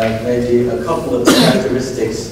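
A man speaking, broken by a short cough about a second and a half in.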